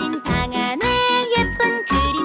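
Children's song: a sung melody over a tinkling, bell-like accompaniment.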